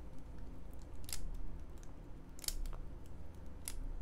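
A pause in speech with about five faint, scattered clicks over a low steady hum.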